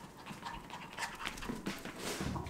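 A small dog panting in quick, irregular breaths.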